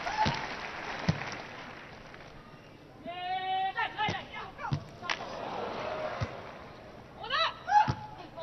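Beach volleyball rally: a handful of dull slaps of hands and arms on the ball, one just after the start, one about a second in and more in the second half, over a steady crowd murmur. High shouted calls from the players come twice, a little before the middle and near the end.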